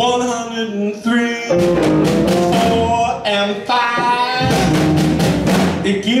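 Live blues band playing between sung lines: drum kit with regular hits, electric and bass guitar, and saxophone, with pitched notes held for about half a second at a time.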